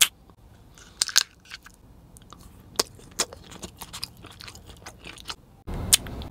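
Close-miked sharp crunches and bites on a foil-wrapped chocolate mousse candy, a few crisp snaps spaced a second or two apart. Near the end a louder, steady rustling begins.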